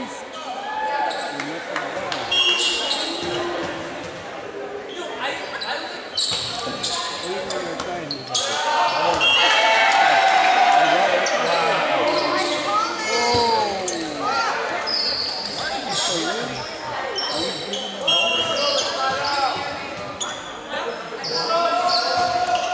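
Indoor volleyball play in a large echoing gym: the ball being struck, sneakers squeaking on the hardwood court, and players and spectators calling and shouting. The voices swell into louder shouting for a few seconds near the middle.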